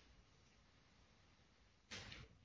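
Near silence: faint classroom room tone, with a short noise starting just before the end.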